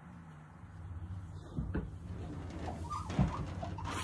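A sliding door moving somewhere far off in a dark house: a faint rumble with a couple of soft knocks, over a steady low hum.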